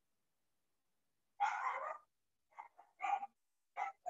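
A dog barking faintly: one longer bark about a second and a half in, then a few short barks near the end, with dead silence between.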